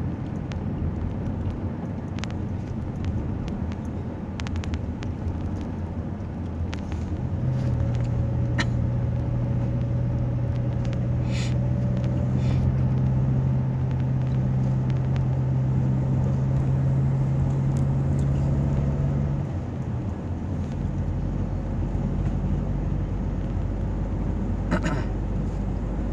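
Car engine and road noise heard from inside the cabin while driving at a steady pace. A steady low engine hum comes in partway through and drops away a few seconds before the end.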